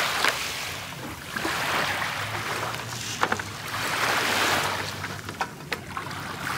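Small waves washing onto a pebbly shore in slow swells of noise every couple of seconds. A few sharp clicks and knocks, about three seconds in and twice near the end, come from a hard plastic case holding a portable gas stove being unlatched and opened.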